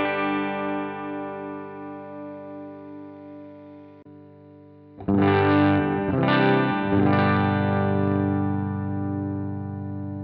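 Electric guitar played through GarageBand for iOS amp simulations. A strummed chord rings out and slowly fades, then about five seconds in a new chord is strummed, a few notes are picked, and a chord is left ringing. The on-screen sound changes from the Auditorium Clean preset to the Clean Stack preset.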